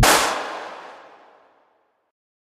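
The closing hit of a slowed, reverb-heavy electronic hip-hop track: a crash right at the start whose reverberant tail dies away over about a second and a half into silence.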